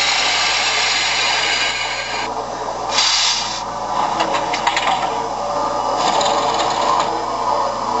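Model steam locomotive (MTH Chapelon Pacific) running slowly: the steady whir of its electric motor, gearing and wheels on the track, with loud steam hiss from its onboard sound system. The hiss is loudest for the first two seconds or so, comes again in a short burst about three seconds in, and more faintly near the end.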